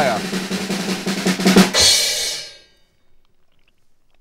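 Drum roll on a drum kit's snare, ending about two seconds in with a single crash hit that rings out and fades.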